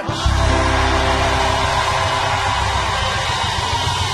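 Live gospel band playing between sung lines: instrumental music with a strong steady bass and no voice.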